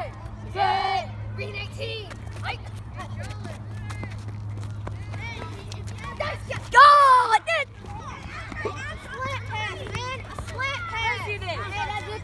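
Several young people talking and calling out, with one loud shout about seven seconds in, over a steady low hum.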